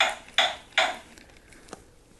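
Bob the Builder talking figure playing a hammering sound effect through its speaker: three sharp metallic clinks about 0.4 s apart, stopping about a second in, followed by a faint click near the end.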